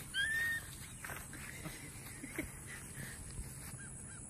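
A short, high animal call about a quarter second in, rising and then holding, followed by a few faint short chirps.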